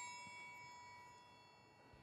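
Metal triangle's ring dying away after a single strike with its beater: a clear ding with several high tones that fades to near silence within about the first half second.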